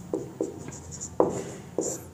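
Marker pen writing on a whiteboard: a few short strokes of the tip across the board.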